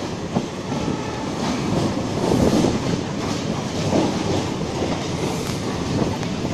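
Electric suburban EMU train running, heard from on board: a continuous rumble with wheels clattering irregularly over rail joints and points.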